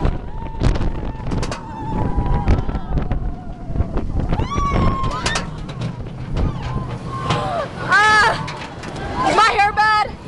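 Riders screaming and whooping on a steel hyper roller coaster, over wind rushing on the microphone and the train's rumble on the track. A long held scream runs through the first few seconds, then shorter rising and falling yells come about five and eight seconds in. The rumble fades in the second half as the train slows.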